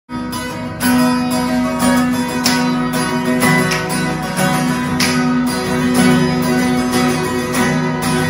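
Instrumental song intro: acoustic guitar strumming chords in an even rhythm, starting at once at the very beginning.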